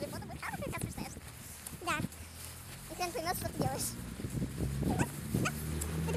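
Young girls' high-pitched voices talking and calling out in short bursts, with a low steady hum that sets in about halfway through.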